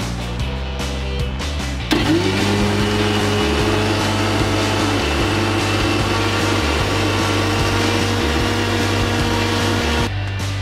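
Electric mixer grinder blending aloe vera gel, ginger and water in a steel jar: switched on about two seconds in, its motor spins up with a rising whine, then runs steadily until it stops. Background music plays throughout.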